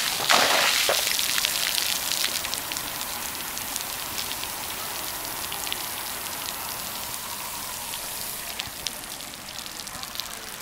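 Water from a splash-pad tipping bucket splashing onto wet pavement. It is loudest in the first second, then fades into a light patter of scattered drips.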